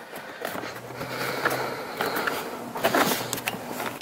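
Plastic door sill trim panel of a Toyota Tacoma being pulled off by hand, its retaining clips letting go. There is rubbing and light rattling of plastic against carpet and the door frame, with a few small clicks and no single loud pop.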